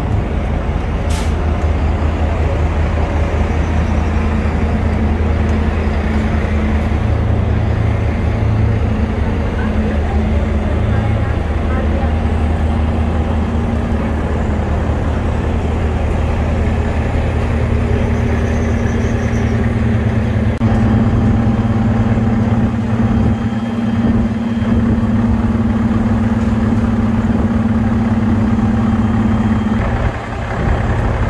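Diesel passenger train idling at the platform: a loud, steady low engine drone with a hum, growing stronger about two-thirds of the way through as the carriage gets closer.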